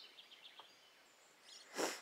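Quiet outdoor yard ambience with a faint songbird twitter of quick high chirps dying away at the start. Shortly before the end comes a short breathy rush of noise.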